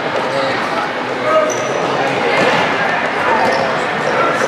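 A futsal ball being kicked and bouncing on a hard indoor sport-court floor, with the overlapping voices of players and spectators, in a large gym hall.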